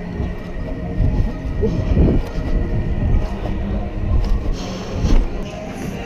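Trampoline beds thudding under bouncing jumps, with a low rumble of handheld camera movement. The thuds fall about a second apart, with a longer gap in the middle.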